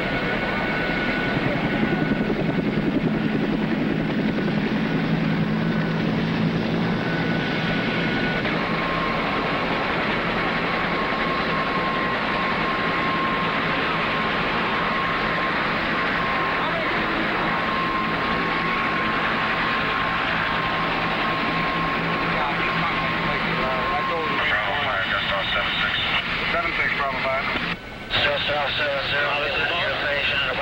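Helicopter running steadily, a thin high whine sitting over the engine and rotor noise. Indistinct voices come in over it in the last few seconds.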